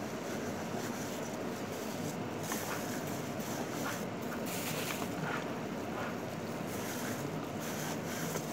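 Clear plastic food bag crinkling in short rustles, about 2, 4 and 7 seconds in, as it is handled to unwrap food, over a steady background hiss.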